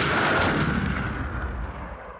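Closing sound-effect sting: a noisy, crash-like rumble with deep bass that fades away steadily.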